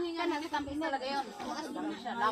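People chatting, with several voices talking over one another.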